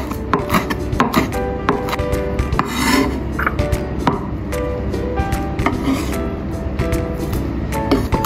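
Chef's knife chopping red chillies on a wooden cutting board: repeated quick knife strikes on the board, over background music.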